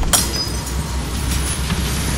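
Intro sound effect of glass shattering: a sudden hit, then a sustained crashing, hissing noise over a deep rumble.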